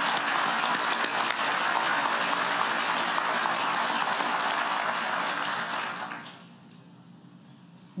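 Large audience applauding, fading out about six seconds in.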